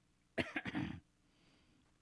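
A man's short cough, in two quick bursts, about a third of a second in.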